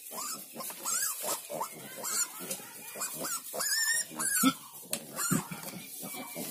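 Piglets squealing and grunting while they jostle at a nursing sow's teats: a run of many short calls that rise and fall in pitch, with a louder low grunt about four and a half seconds in.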